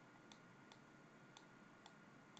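Near silence: room tone with faint, sharp ticks about twice a second.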